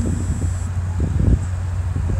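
Wind on the phone's microphone: a steady low rumble with irregular gusts, the strongest about a second in.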